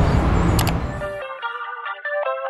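City traffic noise with a heavy low rumble and a sharp click just past halfway; a little over a second in it cuts off suddenly and background music takes over, a run of light melodic notes.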